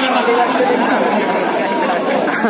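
A man speaking, amplified through a microphone, with other voices overlapping.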